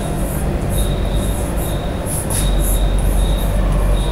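Chalk scratching on a blackboard in a run of short strokes as letters are written, with an on-off thin high squeak. Under it runs a loud, steady low rumble that swells in the second half.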